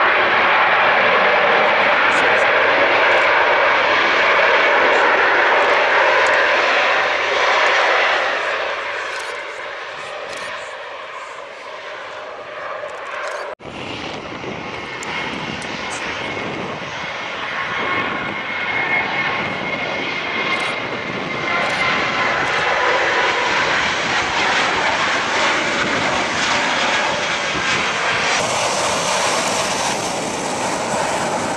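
Jet airliner turbofan engines on a wet runway: a Swiss Airbus A320-family jet loud at first, then fading away over a few seconds. After a sudden cut, a Jet2 Boeing 737's engines build up and hold steady.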